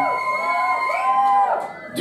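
A man's voice imitating a police siren into a microphone: high, held, wavering tones in two swells that break off just before the end.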